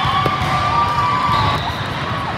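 Volleyball hall crowd noise: players and spectators cheering and calling out, with a long held shout in the first second and a half and shorter calls after it.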